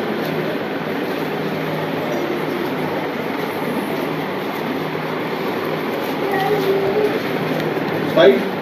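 Steady rushing noise with a low, even hum from a running machine, with no change in level throughout.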